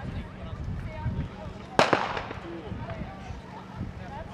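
A single starter's pistol shot about two seconds in, the signal that starts a 300 m hurdles heat. Voices and crowd chatter run around it.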